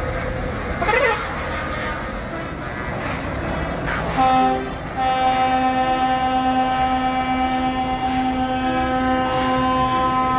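Truck air horn: a brief blast a little after four seconds, then one long, steady blast from about five seconds on. The diesel engines of convoy trucks run close by underneath.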